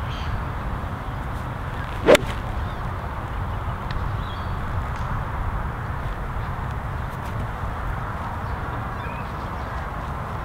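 A golf 2-iron striking the ball off turf: one sharp, loud crack about two seconds in, over a steady low background rumble.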